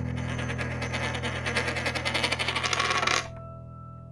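Outro sound logo: a held low chord under a rapid metallic ticking, like a coin or top spinning, that quickens and then stops sharply about three seconds in, leaving the chord to fade.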